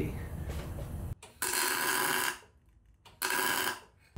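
MIG welding arc tacking a steel tube: two short welding bursts, the first about a second long and the second shorter, each starting and stopping abruptly. The tacks come out with porosity.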